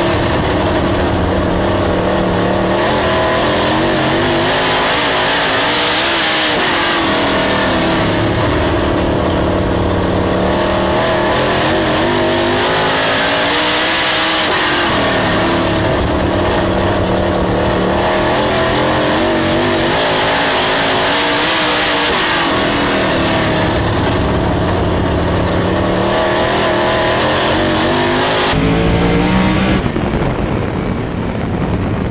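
Dirt late model race car's V8 engine at racing speed, heard onboard: the engine note climbs, then drops as the driver lifts for a turn, about every seven or eight seconds, over the hiss of tyres on dirt. Near the end the sound turns duller.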